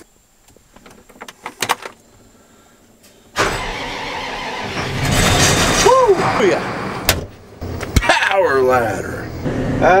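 Combine harvester's diesel engine starting about three seconds in after a few quiet seconds of small clicks, then running steadily and growing louder about five seconds in. It starts despite the worry that the monitor, left on, had drained the battery.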